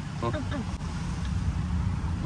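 A short bit of voice just after the start, then a steady low outdoor rumble.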